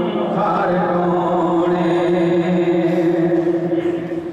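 A man singing a Punjabi naat (a devotional song in praise of the Prophet) into a microphone in a chant-like style, holding one long steady note.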